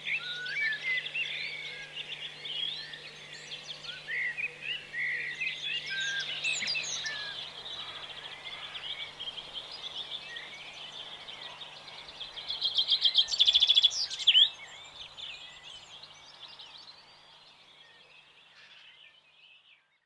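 Songbirds singing and chirping, many short whistled notes overlapping, with one loud rapid trill about thirteen seconds in; the birdsong fades away near the end. A faint steady low hum sits underneath.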